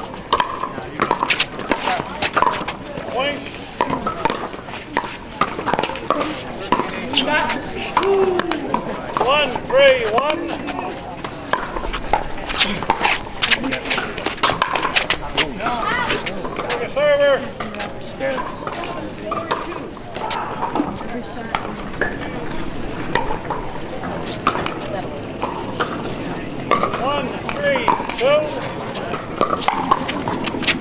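Pickleball rallies: repeated sharp pops of paddles hitting the plastic ball, here and on neighbouring courts, over background voices talking.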